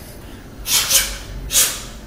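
A boxer's two sharp hissing breaths out, about a second apart, exhaled with his punches and slips.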